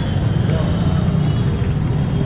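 Busy street traffic: motorcycle and scooter engines running in a steady low rumble, with the voices of a crowd mixed in.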